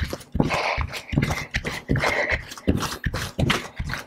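A woman breathing hard and fast, about two breaths a second, from the effort of quick mountain climbers. Soft thuds of bare feet landing on a yoga mat come with each step.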